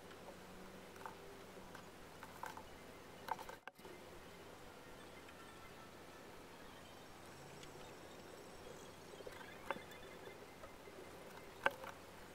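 Faint scratching of a lithographic pencil drawing on aluminium foil, with a few light ticks of the pencil tip against the plate, the sharpest near the end.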